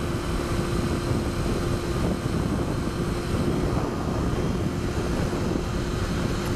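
Honda CBR954RR Fireblade's inline-four engine running steadily at motorway cruising speed, under a dense rumble of wind noise on the microphone, with one steady hum held throughout.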